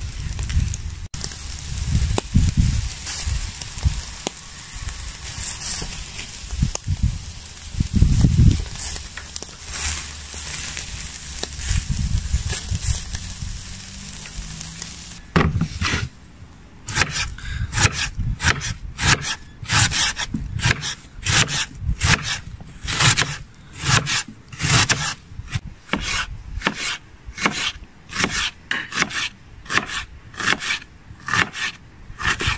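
Skewered meat sizzling over hot coals, with irregular low thumps. About halfway through, this gives way to a knife slicing a raw onion on a wooden cutting board: crisp cuts, about one or two a second.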